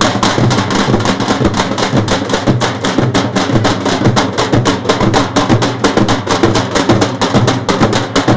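A group of street drummers beating stick-played drums, a metal-shelled side drum and a bass drum, in a fast, steady rhythm with rapid strokes.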